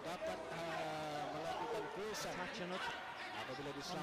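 A man speaking: match commentary.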